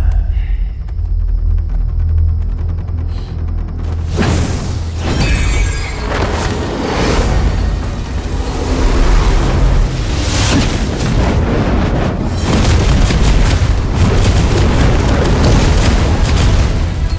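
Deep booming rumble, then from about four seconds in a run of blasts and crashing impacts over dramatic music: sound effects of magic attacks exploding against a glowing barrier dome.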